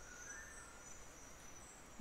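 Near silence: faint outdoor ambience with a thin, steady, high-pitched insect tone.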